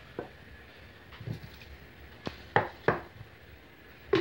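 A few sharp knocks and clicks of plastic kitchenware being handled: a plastic blender jar and a cup or lid being set down and knocked together. The three loudest come close together, about two and a half to three seconds in; the blender motor is not running.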